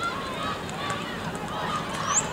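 Distant voices shouting and calling across a soccer pitch, over a steady hiss of open-air noise.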